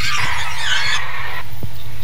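A loud, harsh burst of distorted noise, strongest in the high range, holding steady and then cutting off suddenly at the end.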